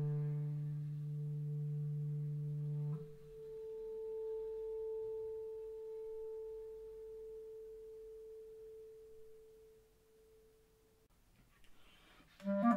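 A clarinet holds a low closing note that stops about three seconds in, leaving one higher tone from the piano ringing on and fading slowly over some eight seconds.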